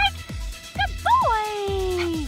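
A dog gives a few short high yips, then one long whine that slides down in pitch, over background music with a steady beat.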